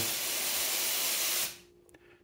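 A steady hiss that lasts about a second and a half, then fades away.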